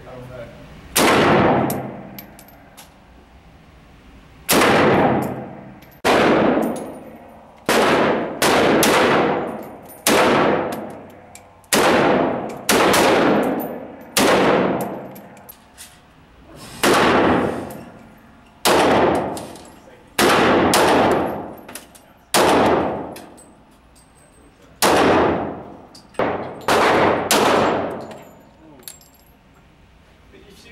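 About twenty semi-automatic gunshots at irregular intervals, from an SKS rifle and then a custom Glock pistol. Each shot echoes off the walls of the indoor range and dies away over about a second.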